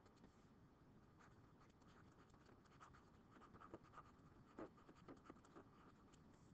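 Faint scratching and light ticks of a stylus writing on a tablet or pen-display screen, a run of small strokes.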